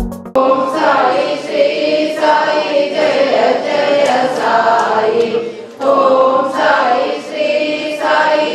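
A group of voices singing a devotional hymn together, with a sharp beat keeping time about every three-quarters of a second and a brief break between lines near the end.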